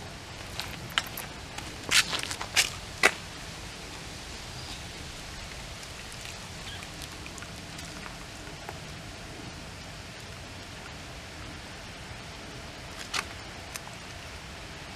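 Steady hiss of a propane burner under a stockpot of boiling water, with a few sharp metallic clicks and knocks in the first three seconds and one more near the end, as a utensil meets the pot while the carcass is lifted out.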